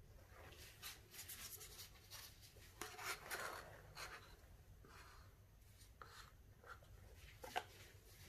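Faint, scratchy strokes of a wooden stir stick scraping the last of the resin out of a paper cup, with a small knock near the end as the cup is set down on the table.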